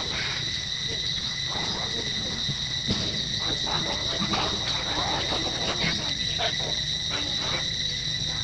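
Steady high-pitched insect drone, with short scattered squeaks and calls from the macaques as they tussle over the baby.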